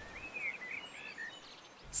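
Faint bird chirps: a few short twittering calls in the first second or so over a low background hiss.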